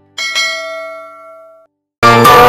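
A bell-chime sound effect, the kind that goes with clicking a notification-bell icon. It strikes twice in quick succession near the start, rings out as several clear tones that fade, and cuts off suddenly shortly before the end.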